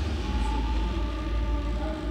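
Steady low background rumble with a few faint held tones above it.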